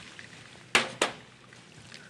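Two sharp knocks of kitchenware being handled, about a quarter second apart and a little under a second in, over faint room noise.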